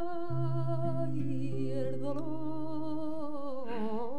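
A woman singing a vidalita in flamenco style, holding one long wordless melismatic vowel with vibrato that sinks in pitch near the end, over a low accompanying note held underneath.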